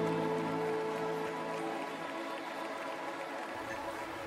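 Soft live worship-band music with held chords that gradually thin out and fade, a quiet transition between songs.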